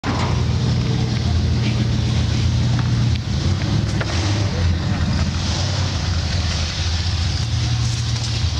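A car engine running steadily at idle, a low even rumble.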